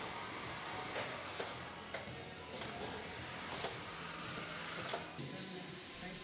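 Quiet background music over faint factory noise, with a few brief sharp bursts from a hanging resistance spot-weld gun firing on the steel panels of an MGB front-end section.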